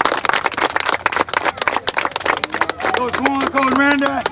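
A group of people clapping, a quick irregular run of hand claps, with voices calling out over it near the end.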